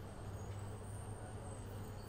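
Faint steady low hum over a quiet background hiss, with no voice.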